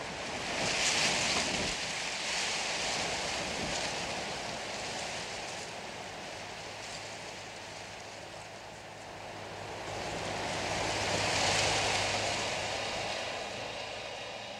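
Theatre soundscape of a rushing, surf- or wind-like noise that swells in the first second or two, ebbs, and swells again near the end. A faint low steady drone comes in about halfway.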